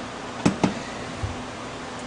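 Micropipette clicking against a plastic rack of pipette tips: two sharp clicks about a fifth of a second apart, then a faint soft knock.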